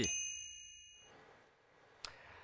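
A bright, high chime rings out once and fades over about a second: the closing ding of a commercial jingle.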